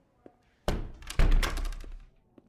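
A door being opened and shut: a sharp first sound, then about half a second later a louder, heavy thunk followed by a brief rattle.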